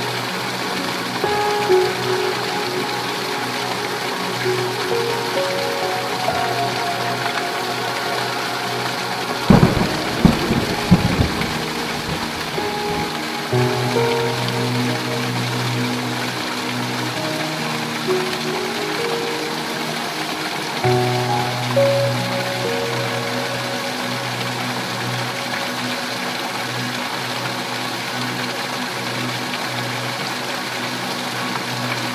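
Steady heavy rain on a tin roof, with soft music of slow held notes laid over it. About ten seconds in, a thunderclap of several sharp cracks lasts a second or two.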